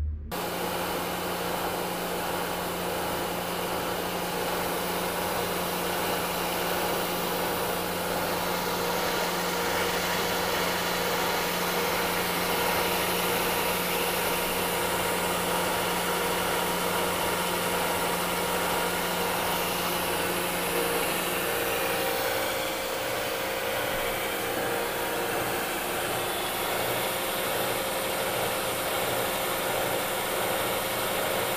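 Horizontal milling machine cutting metal with an arbor-mounted cutter: a steady machine noise with several held tones. A low hum in it drops out about two-thirds of the way through.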